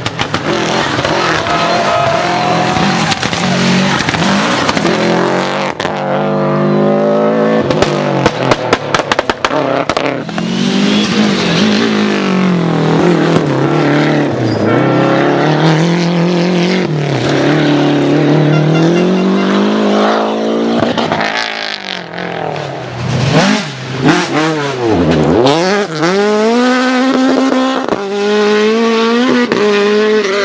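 Rally cars driven flat out on a stage, engines revving hard up and down through gear changes. A rapid run of sharp cracks comes about six to ten seconds in. Near the end, the engine pitch swoops down as cars pass close by.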